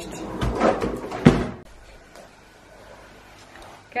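A kitchen pull-out larder cabinet sliding on its runners, the cans, jars and bottles on its wire shelves rattling, with a sharp knock about a second in.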